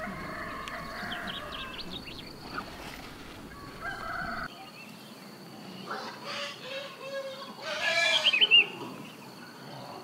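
Farmyard chickens calling, with a rooster crowing; the loudest call comes near the end, and small birds chirp high above.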